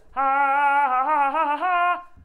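A woman's voice holding one long, loud sung note with a few small wavers in pitch, cutting off just before the end.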